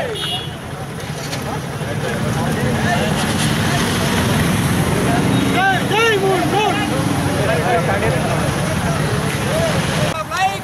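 Many motorcycle and scooter engines running together in a dense, steady low drone that builds over the first couple of seconds, with men's voices shouting over it in the middle.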